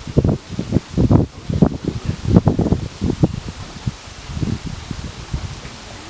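Wind buffeting the camera microphone in irregular gusts, a low rumbling that swells and drops every fraction of a second.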